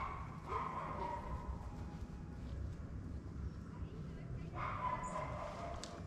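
A dog whining faintly in two drawn-out calls, one about half a second in and another near the end.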